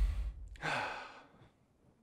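A deep low rumble fades away over the first moments, then a man gives one short, breathy sigh about half a second in.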